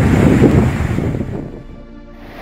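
Tsunami surge rushing ashore, with wind buffeting the phone microphone, rough and low; it fades away over the last half-second.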